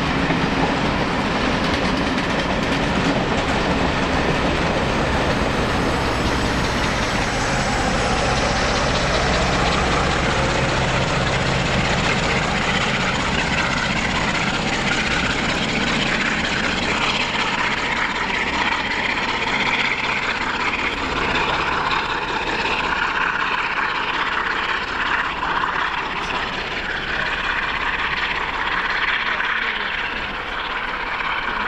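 A train of coaches running past and away, wheels clattering, with the steady hum of a diesel engine that sounds like a class 37 locomotive (English Electric V12) on the rear. The engine hum fades about two-thirds of the way through.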